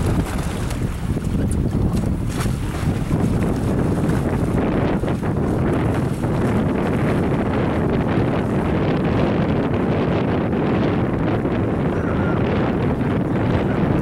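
Wind buffeting the microphone out on open water: a loud, steady low rumble, with a few brief crackles in the first few seconds.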